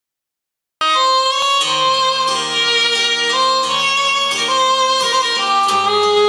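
Acoustic country music starts abruptly about a second in: strummed acoustic guitar under a lead line of long held notes that bend in pitch.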